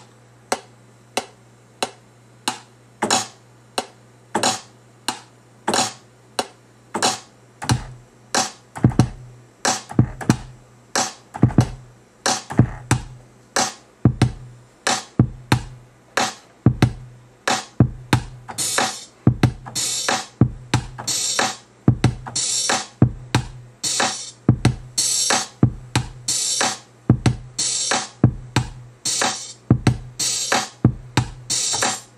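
Reason 4 drum samples played from the pads of an Akai MPK49 and recorded over the 92 BPM metronome click, over a steady low hum. For the first few seconds only the click is heard. Kick-drum hits join about eight seconds in, and a bright hi-hat layer comes in about eighteen seconds in.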